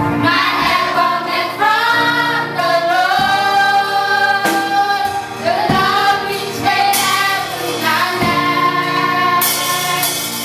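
Children's church choir singing a gospel song into microphones, with a woman's voice leading.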